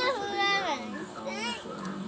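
A young girl's high voice, its pitch gliding up and down in short phrases.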